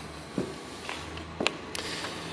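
Quiet room tone in a large indoor space, with two faint short clicks about a second apart.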